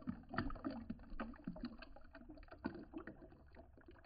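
A stream of apple and carrot juice pouring from a Nama J2 juicer's spout into a glass jar, splashing and gurgling with a dense, irregular patter. It grows quieter toward the end as the stream thins.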